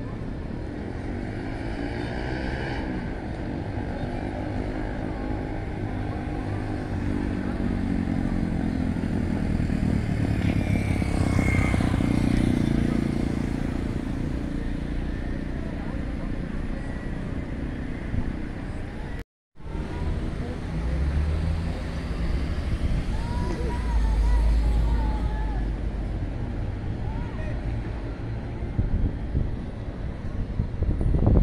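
Street traffic: vehicle engines passing and running, swelling loudest around ten to fourteen seconds in, over a steady city din with faint indistinct voices. The sound cuts out completely for a moment just after nineteen seconds.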